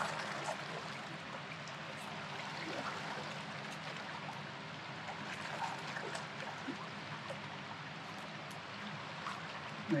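River water running steadily, an even rushing noise.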